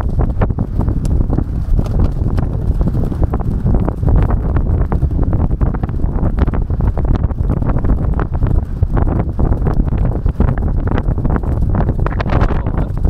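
Racehorses galloping on turf, heard from the saddle of one of them: a rapid, unbroken drumming of hoofbeats under heavy wind rumble on the microphone.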